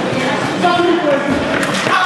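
Indistinct shouts and calls from players during an indoor mini-football game, echoing in a sports hall, with a couple of sharp knocks from the ball near the end.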